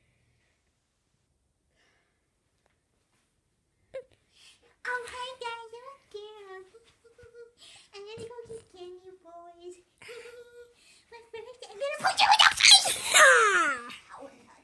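Near silence for the first four seconds, then a boy's voice making wordless pitched sounds: held notes that step up and down, ending near the end in a loud high vocal sound that slides steeply down in pitch.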